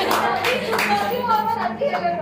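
A few hand claps among people talking and laughing.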